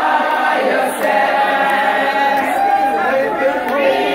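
A group of women singing together without instruments, with crowd chatter mixed in.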